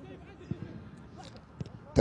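Faint pitch-side ambience of a football match during a pause in the commentary, with two soft knocks, one about half a second in and one near the end.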